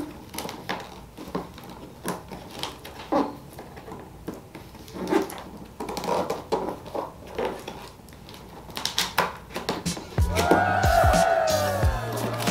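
Hands working at the flaps of a cardboard box: scattered scrapes, taps and rustles of cardboard. About ten seconds in, music comes back with a short cheering sound effect.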